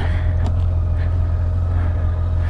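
An engine idling: a steady low hum with a faint, steady higher whine above it.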